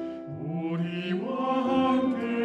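A choir sings sustained notes of a Christmas cantata over piano accompaniment, moving to new pitches partway through. This is a part-practice recording, with the bass part brought forward.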